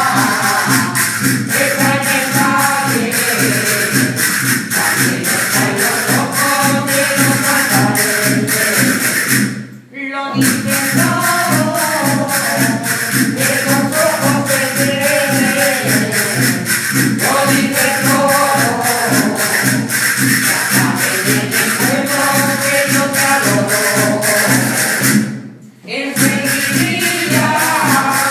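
A mixed group of women's, children's and men's voices singing a seguidilla, a Spanish folk song, in unison over large barrel-shaped drums and a fast, even percussion beat. The music breaks off briefly twice, about ten seconds in and near the end.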